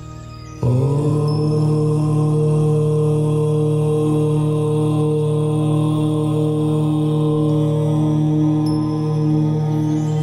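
A low voice chanting one long, steady "Om" that begins suddenly about half a second in and is held without a break, over soft ambient meditation music.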